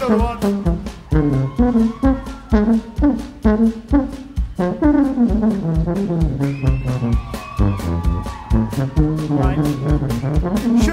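Live New Orleans-style brass band playing: a sousaphone bass line with saxophone and trombone over a steady drumbeat.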